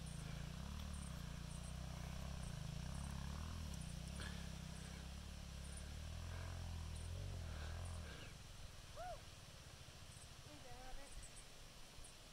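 A faint, low engine idle hum that cuts off about eight seconds in. After it, a couple of faint, short, high chirps.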